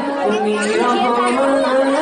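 A young man's voice singing a naat, an Islamic devotional song, through a microphone, drawing out long notes that slide and waver in pitch.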